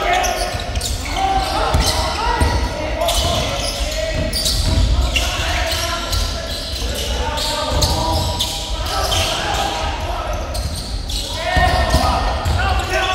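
A basketball bouncing on an indoor court now and then, as a few irregular knocks, over indistinct overlapping voices of players and onlookers, all echoing in a large sports hall.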